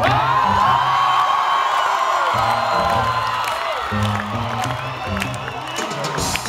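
Live salsa band playing a repeating bass line, heard loud from the audience, with the crowd cheering and whooping over it, strongest in the first half.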